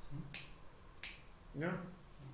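Two sharp, high-pitched clicks about 0.7 seconds apart, followed near the end by a brief spoken reply.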